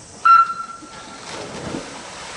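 Electronic start signal sounding one steady high beep, just under a second long, starting a swimming race. It is followed by the splash and wash of the swimmers diving into the pool.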